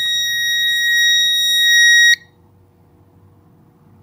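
Fire alarm horn sounding one continuous high-pitched electronic tone, which cuts off abruptly about two seconds in as the fire alarm control panel is reset.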